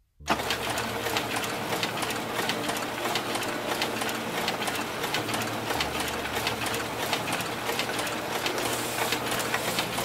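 A background music track starts abruptly a moment in. It is a dense, harsh buzzing texture full of rapid clicks over a low steady hum.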